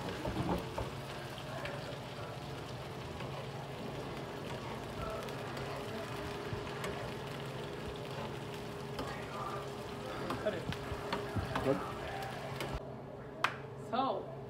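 Sliced onion, peppers, okra and carrots sizzling steadily in oil in a frying pan. A metal spoon clinks and scrapes against the pan as they are stirred, mostly in the second half. Near the end the hiss cuts off abruptly.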